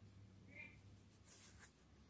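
Near silence, with faint scratchy rustling of coarse fibre rope strands being worked by hand during a splice, strongest briefly in the second half.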